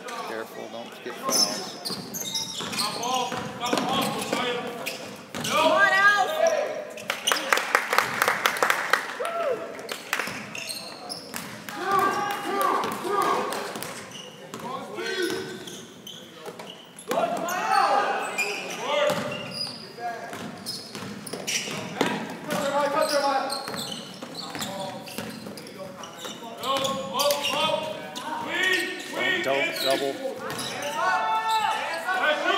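A basketball bouncing repeatedly on a hardwood gym floor during play, mixed with indistinct voices of players and spectators.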